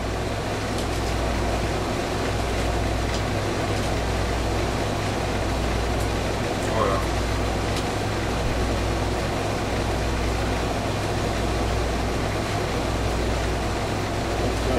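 A steady low hum under constant background hiss, with a brief voice-like murmur about halfway through.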